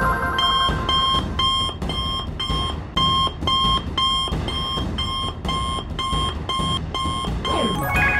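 Electronic alarm beeping over and over, a little more than two beeps a second, each beep a two-tone electronic note, over background music. It is a cartoon alert sound answering a call for help. A falling swoop sounds near the end.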